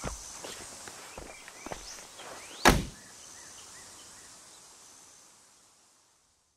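A few soft footsteps and small clicks over quiet outdoor background, then a car door shut with one solid thunk about two and a half seconds in. The background then fades away.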